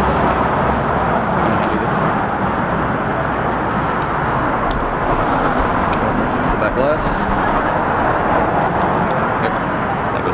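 Steady wash of nearby road traffic noise, with a few light clicks of camera bodies and lenses being handled.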